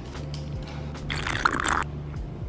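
Background music with a steady low bass line. A little over a second in, a short wet, hissy sound lasting under a second comes from a mimosa in a cocktail glass as the drink is handled.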